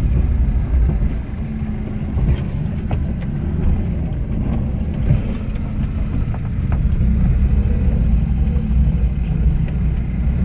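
Steady low rumble of a slow-moving vehicle's engine and road noise, with a few faint clicks over it.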